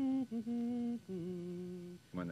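A voice humming a slow, wordless melody: a few held notes that step lower in pitch, the last one held for about a second.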